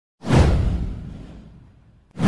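A whoosh sound effect with a deep boom beneath it. It starts suddenly about a quarter second in, its hiss sweeping downward, and fades away over about a second and a half.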